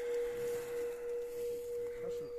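A steady pure tone held at one unchanging pitch, with faint voices underneath.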